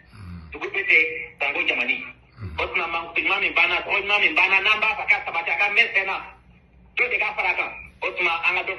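Speech only: a voice talking, thin and telephone-like, with a short pause near the end.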